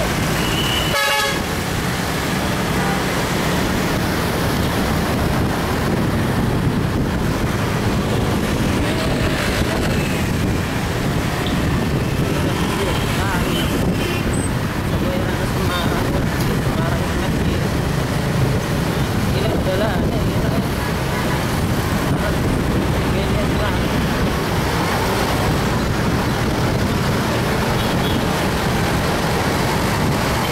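Steady road-traffic noise of motorcycles and cars moving together, with engine rumble, and a short vehicle-horn toot about a second in.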